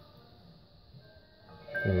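Dahua IP video intercom indoor monitor starting to ring about one and a half seconds in, after a quiet start, with a chime ringtone: a little tune of clear high tones. This is the call signal that the doorbell at the outdoor station has been pressed.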